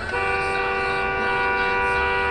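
Car horn held in one long, steady blast, two notes sounding together, as a pickup cuts in just ahead.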